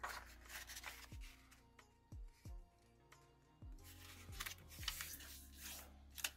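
Soft background music, with a few light taps and the rustle and crease of a sheet of origami paper being folded corner to corner along its diagonal, busiest near the end.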